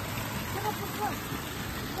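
Faint voices of people talking some way off, over a steady rushing background noise.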